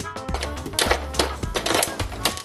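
Popcorn kernels popping rapidly and irregularly inside a foil-covered Jiffy Pop pan on a stovetop, over background music.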